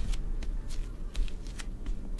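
Light, irregular clicking and rustling as spoons are handled over bowls on a table, over a steady low hum.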